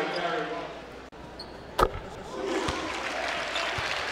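A basketball bouncing on a hardwood court: one sharp knock a little under two seconds in, then a couple of softer thumps. Underneath is the murmur of the arena crowd, which fades over the first second.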